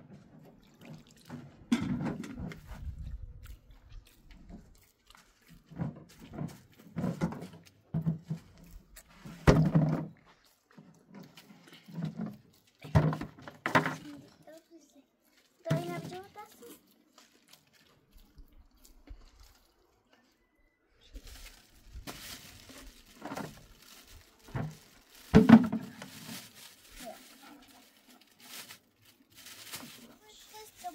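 Wet dough being kneaded by hand in a plastic bowl, heard in short bursts between voices.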